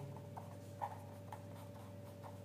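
Pen writing on paper on a clipboard: faint, irregular scratches of short pen strokes as a word is written out.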